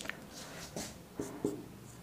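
Marker pen writing on a whiteboard: faint scratching with a few short strokes.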